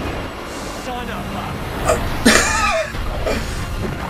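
Audio of a television drama episode: short bits of voice over a steady background noise, with a louder voice about halfway through.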